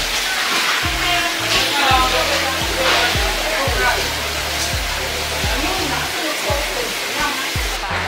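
Background music with a bass line and a steady beat about once a second, over a steady hiss of bubbling water from aerated seafood tanks.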